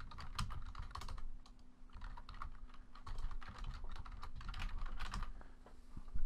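Typing on a computer keyboard: a quick, irregular run of key clicks as an email address is typed in.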